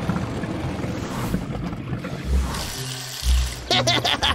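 Cartoon background music over a rushing, watery wash and two deep thumps from a water pump starting up and drawing water through a pipe. A man's laugh starts near the end.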